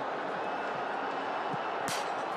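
Steady stadium crowd noise during the run-up to a penalty kick, with one short sharp strike near the end as the ball is kicked.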